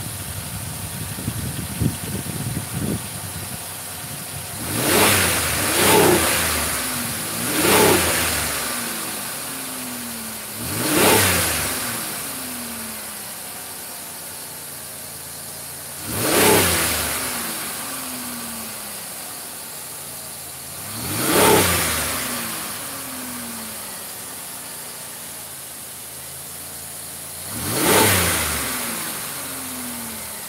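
A Pontiac Grand Am's engine running with the hood up after a fresh oil change. It idles with an uneven clatter for the first few seconds, then is blipped seven times, each rev climbing quickly and sinking back to idle.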